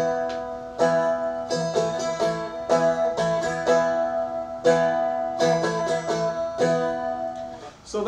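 Seagull Merlin strummed in a repeating rhythmic pattern, its strings ringing on with a steady drone. The player is on an E chord and flicks a finger quickly on and off a string between E and A, which is the chorus 'modulation'.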